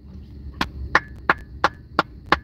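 Hands clapping in a steady rhythm: five sharp claps about a third of a second apart.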